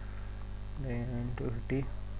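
Steady electrical mains hum running under the recording, with a short murmured bit of voice about a second in.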